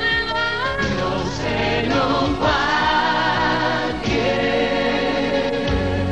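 Closing bars of a telenovela's opening theme song: music with sung voices holding long notes, the chords shifting a few times.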